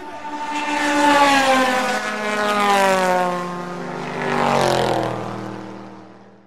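A sustained droning tone with many overtones, sliding slowly down in pitch and swelling a few times as it fades out.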